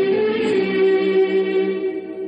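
Hindi film song music: a long sustained chord held steady, softening slightly near the end, ahead of the first sung line.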